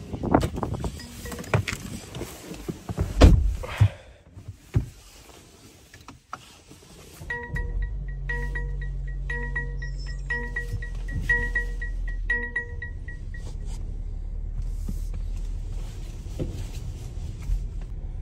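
Clunks and a heavy thud as a Mercedes-Benz car is boarded. From about seven seconds in the car runs with a steady low hum while a dashboard warning chime beeps rapidly and repeatedly for about six seconds.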